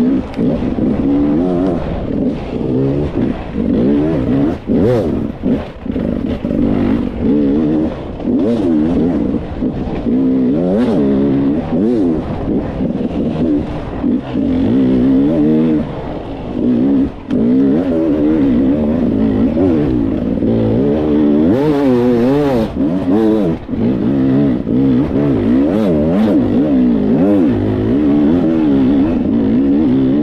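Enduro motorcycle engine heard from on board, revving up and down without pause as the throttle is opened and closed every second or so along a twisting, rocky trail. Short clicks and knocks break in here and there.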